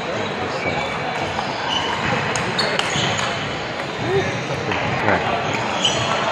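Table tennis ball clicking off rubber paddles and the table in a rally, a few sharp hits at uneven intervals, over a steady murmur of background voices.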